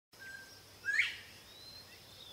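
Northern bobwhite calling its whistled 'bob-white': a short level note, then a loud, sharply rising whistle about a second in. A few fainter, thin bird whistles follow.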